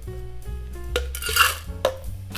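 Crushed ice scooped with a metal scoop and tipped into a stainless steel cocktail shaker tin: a few short rattling bursts from about a second in, ending in a sharp metallic clink, over background music.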